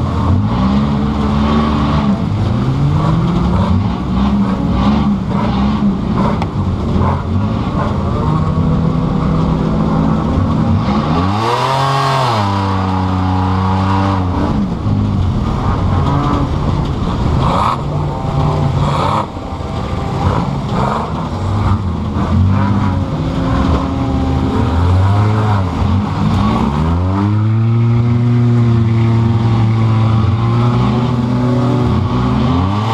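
2005 Pontiac Grand Prix's engine heard from inside the cabin, revving up and down over and over as the car is driven hard on a dirt track, with one big rise and fall about halfway through and a long high rev near the end. Frequent knocks and rattles from the stripped car body run through it.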